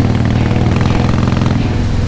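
Harley-Davidson Heritage Softail Classic V-twin engine running steadily while the motorcycle cruises along at an even speed.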